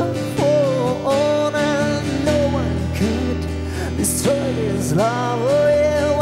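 A man singing a slow song to his own strummed acoustic guitar, holding long notes and sliding between them.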